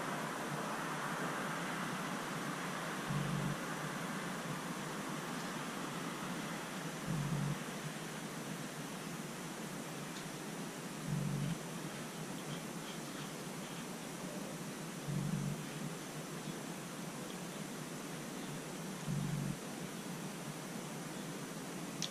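Steady faint background hiss, with a soft low thump repeating evenly about every four seconds.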